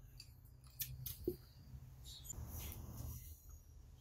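Faint handling noise: a few small sharp clicks in the first half, then a short soft rustle a little past the middle.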